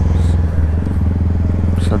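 Honda Grom's 125cc single-cylinder engine running at a steady low note while the bike rolls slowly in traffic, heard from the rider's seat.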